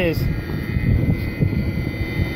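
Irrigation well's pump motor running with a steady drone, a low rumble under a few faint constant tones.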